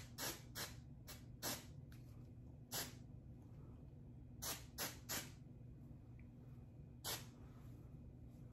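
Aerosol root cover-up hair spray given about nine short spritzes at the roots along the part, each a brief hiss, some coming in quick pairs.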